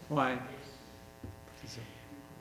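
A man says "oui" briefly over a steady electrical mains hum, a buzz of many even tones carried in the meeting room's sound system; faint voices follow in the second half.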